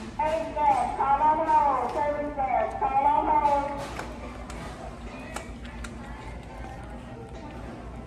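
A child's high-pitched voice, vocalising without clear words for about four seconds, then a quieter background with a few faint clicks.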